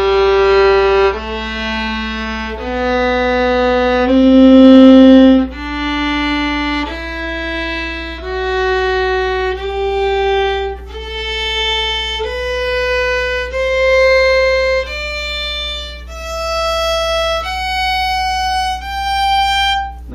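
Solo violin playing a G major scale slowly in half notes, one bowed note held about a second and a quarter each, climbing step by step over two octaves.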